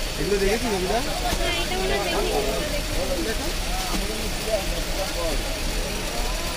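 Voices of several people talking in a crowded street market, over a steady low background hum.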